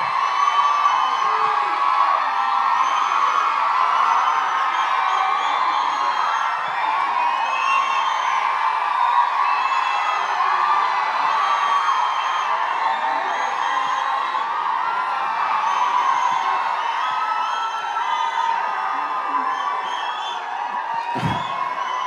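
Large crowd cheering and whooping, with many short high calls over a steady roar that goes on for about twenty seconds.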